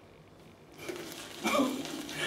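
Wet shaving brush swirled and scrubbed on a puck of tallow-based Stirling shaving soap in its tub, loading the brush with soap: a soft, wet scrubbing that starts just under a second in.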